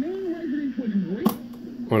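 A voice from an AM broadcast coming through the loudspeaker of a 1948 Westinghouse H104 tube table radio, with a single sharp click about a second in.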